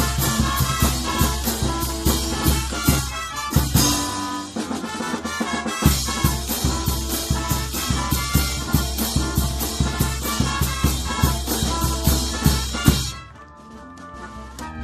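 Live brass band, sousaphones and bass drum among it, playing a tune on a steady drum beat. The low drum drops out for a moment about four seconds in, then comes back. The music stops suddenly about a second before the end.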